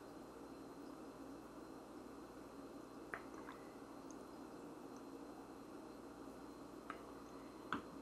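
A man sipping beer from a glass and swallowing: mostly faint and quiet, with a few short soft clicks about three seconds in and again near the end.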